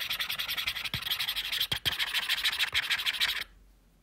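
A fast, grainy scratching noise with a few sharp clicks, cutting off suddenly about three and a half seconds in.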